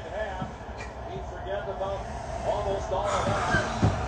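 Indistinct talking in the background, with a rush of noise about three seconds in and a thump just before the end.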